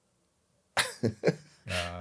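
Silence, then about three quarters of a second in a man coughs three quick times close to a microphone, followed by a spoken "uh".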